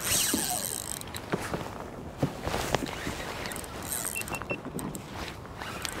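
Spinning reel's drag giving line in short spells, with scattered clicks and knocks from the reel and rod, while a hooked striped bass pulls against the bent rod.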